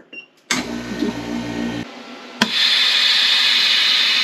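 Vevor chamber vacuum sealer finishing its cycle: the pump hums for about a second and a half and stops, then a sharp click and a loud, steady hiss of air rushing back into the chamber as the vent valve opens, the sign that the bag has been sealed under vacuum.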